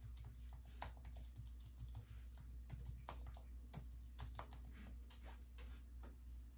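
Faint keystrokes on a computer keyboard, a string of irregular clicks as a password is typed in.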